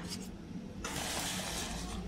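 Plastic bubble wrap rustling as a wrapped LCD screen is handled in its cardboard box, a steady crinkling hiss that starts just under a second in.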